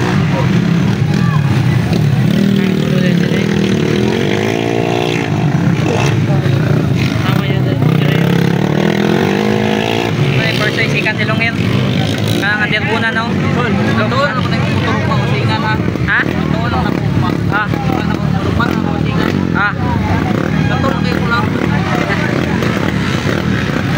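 Underbone motorcycle engines running and revving around a dirt track, their pitch rising and falling, with voices of a crowd mixed in.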